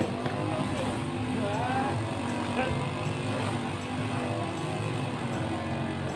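A grass-cutting machine's small engine running steadily in the background, with a single sharp hit at the very start.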